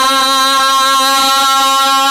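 A man's voice holding one long sung note with a slight waver, in unaccompanied naat recitation (devotional Urdu poetry sung in praise of the Prophet).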